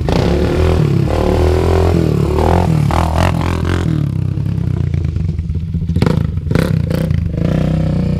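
ATV engine running and revving as the quad is ridden around, over a steady low engine rumble. A few sharp clattering knocks come about six to seven seconds in.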